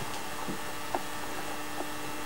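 A steady electrical hum over faint hiss, with a couple of small ticks about half a second and a second in.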